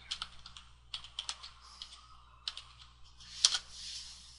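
Typing on a computer keyboard: several short runs of key clicks, with one louder keystroke about three and a half seconds in.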